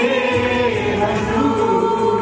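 A small worship group, a man and several women, singing a Christian worship song together into microphones, holding long notes over a steady instrumental backing.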